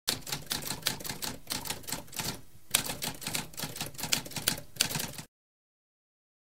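Typewriter keys clacking in quick, uneven strokes, with a brief pause about two and a half seconds in; the typing stops abruptly a little after five seconds.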